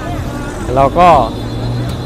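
A man says a couple of words in Thai over the steady low hum of road traffic on a busy street.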